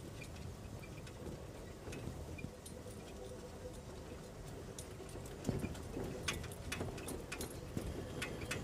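Game-drive vehicle moving slowly, a low engine rumble with scattered knocks and clicks from the body and tyres on rough ground, getting busier in the second half.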